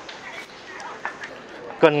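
Speech: faint background voices and outdoor ambience, then a man's voice speaking loudly near the end.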